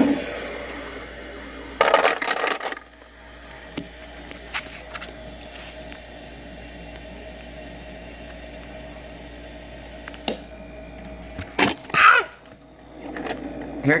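Countertop Igloo bullet-ice maker running its ice-dump cycle: a steady motor hum with louder bursts of clatter about two seconds in and again near the end as the ice cubes drop into the basket.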